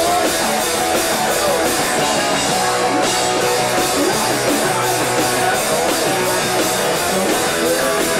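Hardcore punk band playing live and loud: distorted electric guitars and a drum kit with a steady cymbal beat, with the singer's vocals over them.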